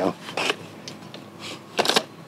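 Big Max IQ360 golf push cart being folded up by hand: a few short plastic-and-metal clicks and rattles as the frame and wheels fold together, the loudest cluster just before the end.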